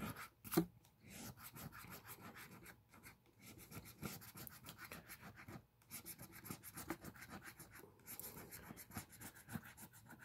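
A coin scratching the coating off a scratch-off lottery ticket in quick, repeated strokes, pausing briefly a few times. There is one sharp knock about half a second in.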